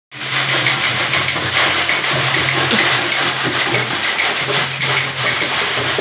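A group playing hand-held frame drums and tambourines together: a dense, continuous mix of quick taps and jingling with no clear steady beat.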